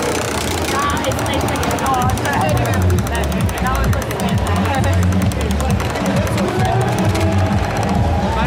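A spinning prize wheel, its pointer flapper ticking rapidly and evenly against the pegs, the ticking starting about half a second in as the wheel gets going.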